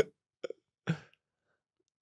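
A man's laughter trailing off in a few short bursts, the last just under a second in.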